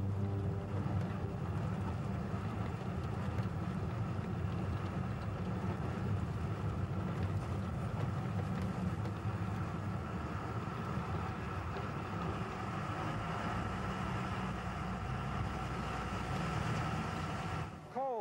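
Underground mine vehicle running steadily through a coal mine tunnel, a continuous low rumble.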